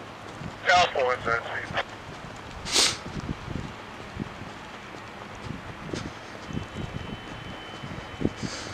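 A brief, unclear spoken utterance about a second in, then a short hiss, over a low outdoor background.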